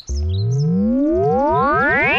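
Synthesized comedy sound effect: a loud, buzzy electronic tone sweeping steadily upward in pitch from a low rumble to a very high whine.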